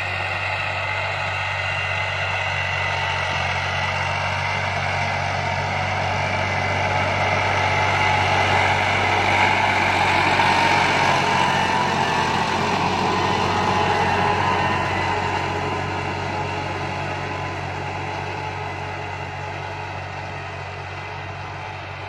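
Tractor engine running under load as it pulls a disc harrow through ploughed soil, growing louder as it passes close about ten seconds in, then fading as it moves away.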